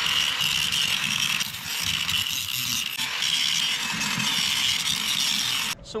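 Handheld angle grinder grinding a freshly welded joint on a steel pipe post smooth: a loud, steady high whine with a grinding rasp, which cuts off suddenly near the end.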